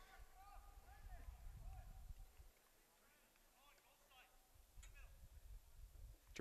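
Near silence, with faint distant voices calling out on the field and a low rumble from the outdoor microphone.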